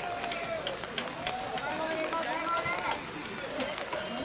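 Several voices calling out and talking across an open football pitch, mixed with the light footfalls of players jogging on artificial turf.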